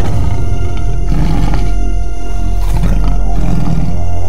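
Loud, ominous horror film score with a heavy low rumbling drone, layered with a roar-like beast sound effect.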